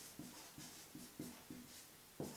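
Marker pen writing on a board, faint: a run of short pen strokes, about five in two seconds.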